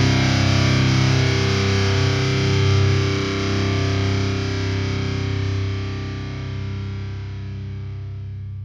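The end of a metalcore song: distorted electric guitar and bass chords ring out and fade steadily toward silence.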